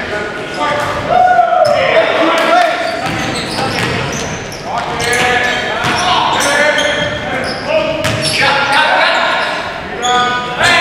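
Live basketball play on a hardwood gym floor: sneakers squeaking in short high-pitched chirps, the ball bouncing, and players calling out, all echoing in a large hall.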